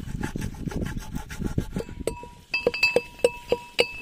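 A raw chicken being cut up on a wooden plank, with rough irregular cutting and scraping strokes. About halfway a steady ringing tone comes in, with sharp clicks about three a second.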